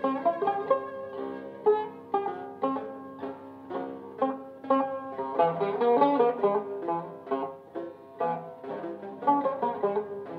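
Turkish tanbur, a long-necked fretted lute, playing a passage of plectrum-plucked notes that ring and die away. The notes come thickest in quick runs around the middle and again near the end.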